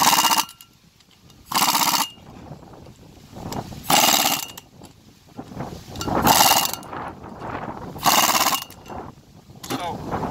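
Impact wrench with a quarter-inch hex bit driving the screws that hold a brake rotor and spacer to a trailer hub, in five short bursts of about half a second each, roughly two seconds apart.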